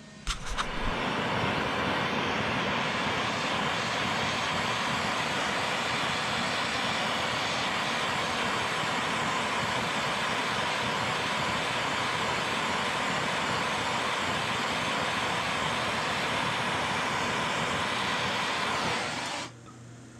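Handheld gas torch burning with a steady hiss as it preheats the aluminum seat-tube joint of a bike frame before welding. A couple of clicks come first, and the flame cuts off abruptly just before the end.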